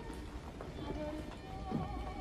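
Film soundtrack: music with a wavering melody, and faint voices underneath.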